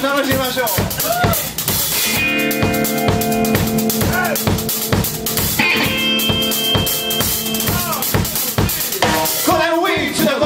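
Live blues-rock band playing an instrumental passage: a drum kit keeps a steady beat under electric guitars. Two long held chords ring out, about two seconds in and again about six seconds in.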